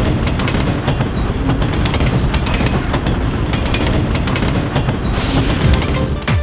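Loud, steady rumble with rapid clattering throughout, with a brief rise in hiss near the end.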